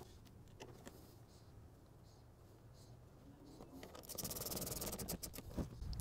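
Faint handling noise as the negative lead is connected to a four-cell LiFePO4 battery pack: a few light clicks, then about four seconds in a second or two of rapid scraping and several small metallic clicks.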